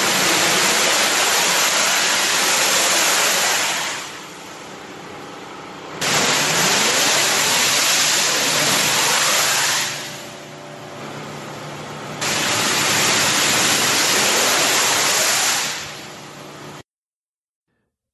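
A recorded mystery sound of loud rushing noise that comes in three surges of about four seconds each. Quieter stretches between the surges carry faint rising and falling tones. It cuts off shortly before the end.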